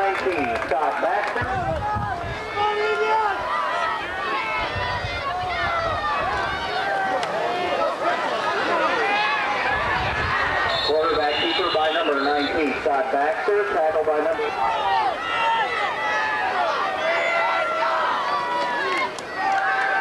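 Football crowd shouting and cheering, many voices overlapping throughout.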